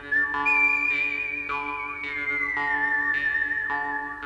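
Background music: a high, held lead melody line with a slight waver that slides down in pitch about halfway through, over a repeating plucked chord accompaniment.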